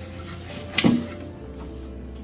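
Soft background music, with one sharp knock a little under a second in as the brass planter is picked up.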